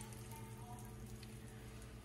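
Faint sizzling of hot olive oil and fried bits in a stainless steel frying pan, over a low steady hum.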